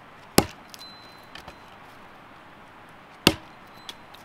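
Knife chopping on a wooden cutting board: two sharp strikes about three seconds apart, with a few lighter taps between.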